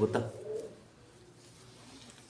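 Domestic pigeon cooing faintly and briefly, just after a short spoken word.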